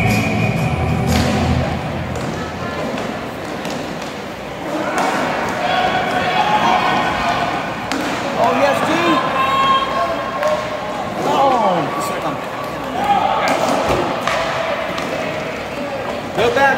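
Inline roller hockey game in a large rink: several indistinct voices of players and spectators calling out, with scattered sharp clacks and thuds of sticks, puck and boards. Background music stops about two seconds in.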